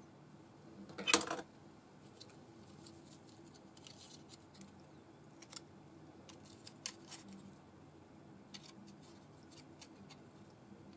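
Faint handling noises of paper and card pieces being moved and pressed into place on a cutting mat: light rustles and small clicks, with one louder rustle or knock about a second in, over a faint steady room hum.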